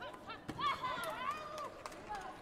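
A taekwondo kick landing on a fighter's body protector with a sharp smack about half a second in, followed at once by loud shouting voices for about a second as the two-point score goes up.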